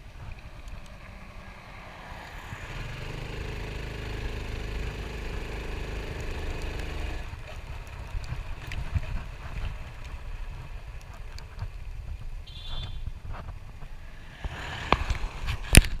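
Small dual-sport motorcycle running along a road, heard from the rider's position over a low rumble; the engine note holds steady under throttle for a few seconds and drops away about seven seconds in. A couple of sharp knocks come near the end.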